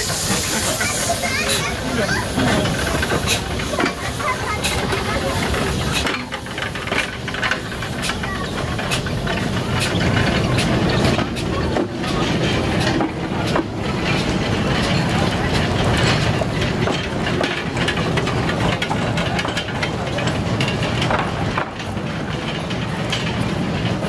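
Henschel Monta narrow-gauge steam locomotive hissing steam as it sets off, then a steady rumble with scattered clicks as its wooden coaches roll past on the 600 mm track.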